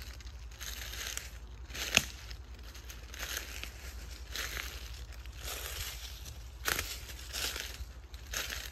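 Footsteps crunching through dry forest-floor cover, about one step a second, with one sharp crack about two seconds in.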